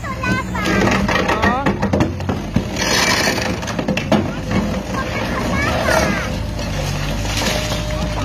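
Trevi Benne MK 20 hydraulic multiprocessor on an excavator crushing concrete: repeated cracks and knocks of breaking concrete over the steady running of the excavator's engine, with two louder hissing, crunching surges. Voices can be heard in the background.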